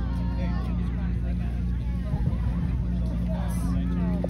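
Background voices of people chatting over a steady low drone.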